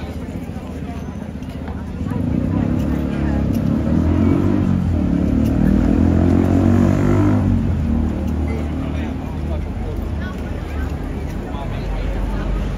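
A motor vehicle's engine running close by, getting louder about two seconds in, its pitch dipping and climbing again midway, then fading after about eight seconds.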